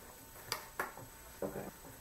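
Two short, light clicks about a third of a second apart, handling noise from objects being moved about, followed by a softly spoken 'okay'.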